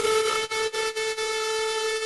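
A single synthesizer note in an early hardstyle track, held at a steady pitch with no drum beat.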